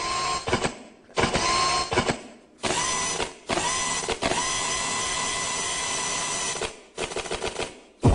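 Drill-like whirring sound effects in the music for a popping dance routine: five bursts that start and stop abruptly, each opening with a short rising whine. The longest runs about three seconds in the middle.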